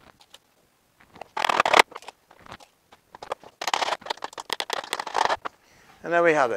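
A wooden hive roof scraping and sliding on a wooden workbench as it is handled and lifted: one short rough scrape about a second and a half in, then a longer run of scrapes from about three and a half to five and a half seconds in.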